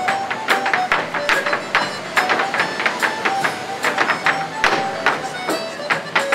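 Irish step dancers' hard shoes rapidly clicking and tapping on a portable wooden dance board, over recorded dance music with a lively melody played through a loudspeaker.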